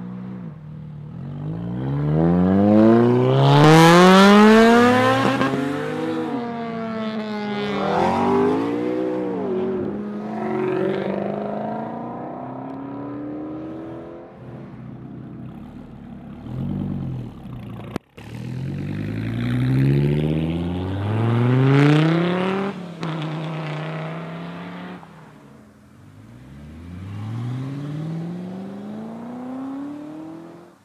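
Several sports cars accelerating hard one after another, each engine revving up through the gears with a drop in pitch at every shift. The sound breaks off sharply for a moment about two-thirds of the way through.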